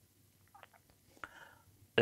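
A quiet pause in a man's speech with faint mouth sounds: a small click about half a second in, and a sharper click with a short breath just after the middle.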